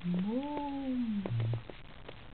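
Small wet clicks of a puppy licking minced beef off a fingertip. Over them comes one drawn-out vocal call lasting about a second, rising then falling in pitch and ending in a brief low hum.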